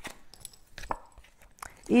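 A few light, irregular clicks and taps from tarot cards being handled as a card is drawn from the deck.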